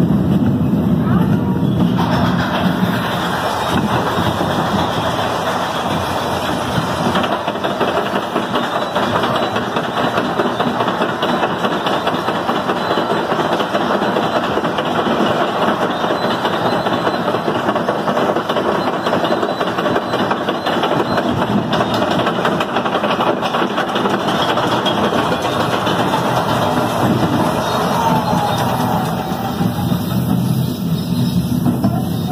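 A roller-coaster-type ride car running along its track, a steady loud rushing rumble, with voices mixed in.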